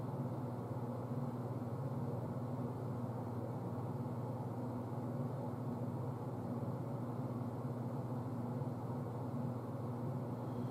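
A steady low hum over faint hiss, unchanging throughout, with no knocks or other events.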